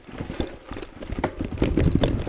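Rapid, irregular knocks and rattles with a low rumble, growing louder in the second half: the jolting of a moving ride over a bumpy grass track.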